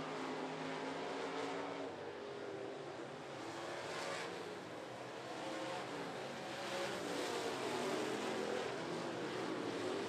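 Several dirt-track race cars' engines running hard around the oval, their pitches sliding up and down as they lap. The sound drops away through the middle and swells again as the pack comes back toward the microphone near the end.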